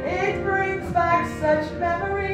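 A voice singing a melody in short held notes over musical accompaniment.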